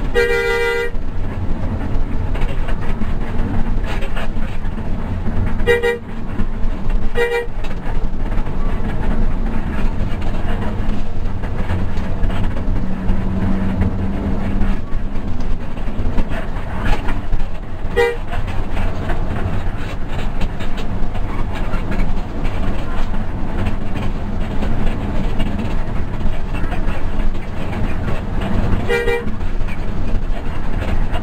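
Steady drone of a Hino RK8 bus's diesel engine and road noise heard from inside the cabin, broken by vehicle horn toots: one longer blast right at the start, short taps about six and seven seconds in, another around eighteen seconds and one near the end.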